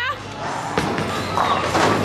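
Bowling ball rolling down the lane and crashing into the pins about a second and a half in, over background music.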